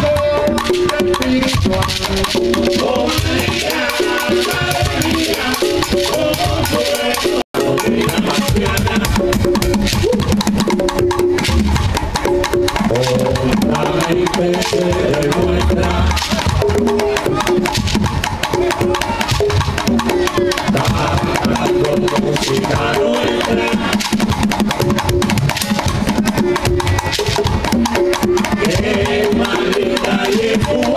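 Live Afro-Cuban rumba: congas and cajón drumming, with a shekere rattling and voices singing over the rhythm. There is a momentary dropout about seven seconds in.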